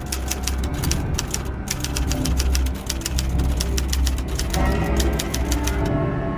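Typewriter keys clacking in quick runs of about eight to ten strikes a second, with two brief pauses, over the steady low rumble of a bus engine.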